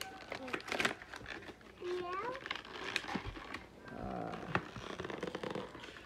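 A young child's short high-pitched vocal sounds, about two seconds in and again about four seconds in, amid rustling, crinkling and scattered clicks from things being handled.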